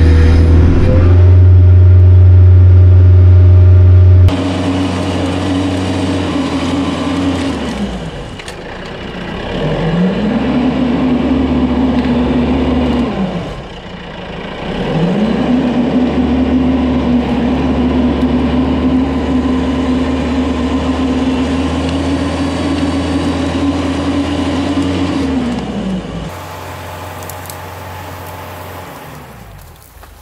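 Kioti RX7320 tractor's diesel engine working under load while pushing brush with the front loader. A loud deep drone at first, then a steady engine note that twice falls in pitch and climbs back before running steady again, quieter near the end.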